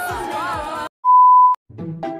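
Upbeat Korean pop music cuts off abruptly about a second in, followed by a loud single steady beep lasting about half a second, an edited-in sine-tone bleep. A few low plucked notes begin near the end.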